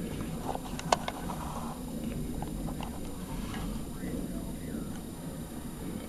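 A few light clicks and small rattles of hook-type test clips and leads being handled on a power transistor's pins, the sharpest about a second in, over a low steady hum.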